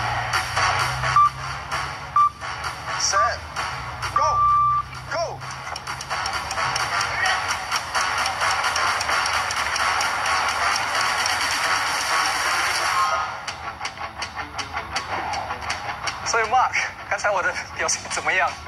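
Background music with four electronic beeps in the first five seconds, three short ones about a second apart and a longer fourth, the pattern of a sprint-start countdown.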